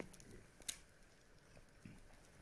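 Near silence: room tone, with a single faint click less than a second in and a softer tick near the end.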